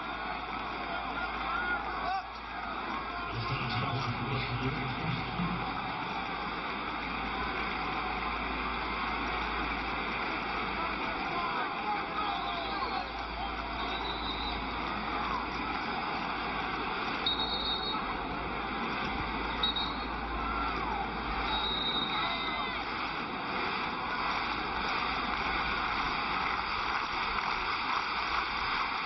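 Large football stadium crowd: a steady din of cheering and chatter, with a brief low held tone about four seconds in and a few short high whistle-like tones later on.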